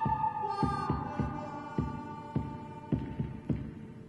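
Dramatic soundtrack of slow, heartbeat-like double thumps repeating about every 0.6 s, under a held high tone that fades out around the middle.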